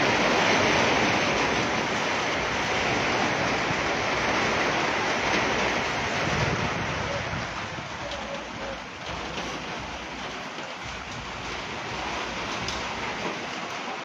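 Heavy rain drumming on corrugated metal roofs in a steady hiss, loudest in the first half and easing a little after about seven seconds, with scattered sharp taps near the end.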